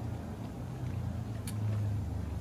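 A steady low hum, with one faint click about one and a half seconds in.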